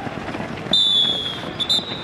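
A trainer's whistle: one long blast of about a second, sagging slightly in pitch, then two quick short toots near the end. The footfalls of a group of runners on a dirt ground sound behind it.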